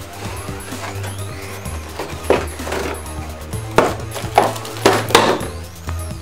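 Clear plastic packaging crackling and crinkling in several sharp bursts during the second half, as a boxed statue is pulled out of its plastic tray, over background music with a steady bass line.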